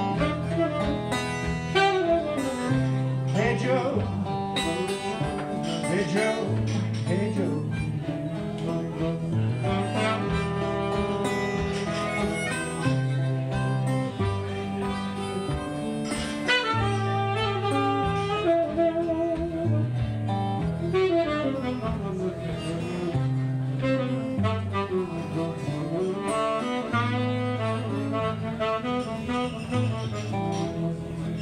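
Live acoustic blues band playing an instrumental break: saxophone and harmonica playing lead lines over a repeating chord pattern on acoustic guitar.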